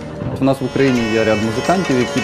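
Hurdy-gurdy (wheel lyre) playing: the turning wheel sounds a steady drone on its drone strings while a melody is played on the keyed string, growing louder about half a second in.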